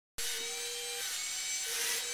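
Wall-climbing remote-control toy car whirring steadily with a high-pitched whine from its suction fan and motor as it drives up a wall.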